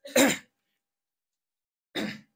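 A man clears his throat with a short, loud rasp into a close microphone, followed by a short, softer burst near the end.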